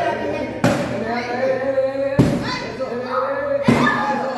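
A wooden stick striking a paper piñata three times, about a second and a half apart, each hit a sharp thud.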